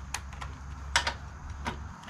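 A few sharp metallic clicks, about three, of a socket being fitted onto a cordless drill and handled before driving a bolt.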